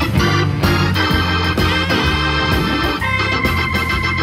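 Hammond organ playing an instrumental blues passage: held chords that change over a drum beat, with a new high sustained chord coming in about three seconds in.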